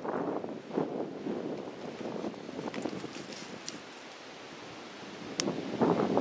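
Footsteps rustling and crunching through dry fallen leaves and twigs, uneven, with a louder crunch near the end, over wind noise on the microphone.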